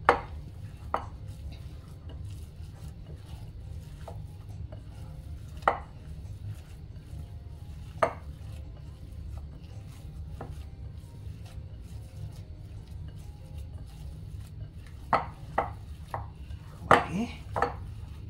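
Hands kneading ground-beef meatball mix in a glass bowl, with scattered sharp knocks of fingers and the bowl against the glass and the stone counter, a cluster of them near the end, over a steady low hum.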